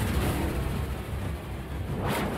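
Television news intro theme music with a deep pulsing bass under a rushing whoosh effect that surges at the very end.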